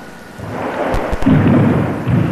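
Low rumbling swell of movement noise with three quick sharp clicks about a second in: a karateka's feet and uniform moving through a kata on a wooden floor, heard through a camcorder microphone.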